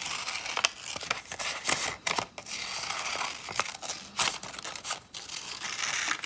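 Scissors cutting through two layers of white paper at once, with a series of sharp snips and the paper rustling and crinkling as it is turned between cuts.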